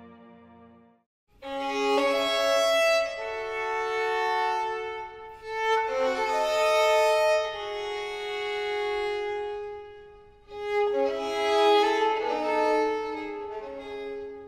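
Solo violin playing slow, sustained phrases with double stops, in three phrases separated by short breaks. It starts about a second in.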